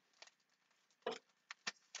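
A few faint, scattered taps and clicks of craft supplies being handled while someone searches through them for an item.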